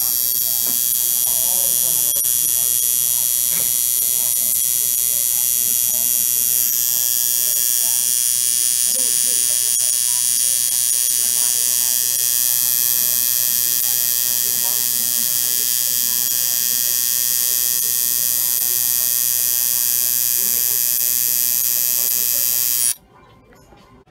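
Electric tattoo machine running steadily while needling a tattoo into the skin, a constant high-pitched buzz. It cuts off abruptly about a second before the end as the tattoo is finished.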